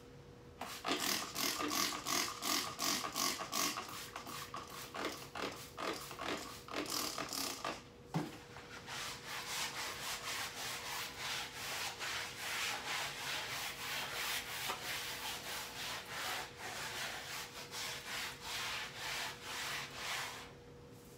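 Hand-scrubbing of a wall, scratchy back-and-forth strokes at about three a second, with a single knock about eight seconds in, then faster, denser scrubbing.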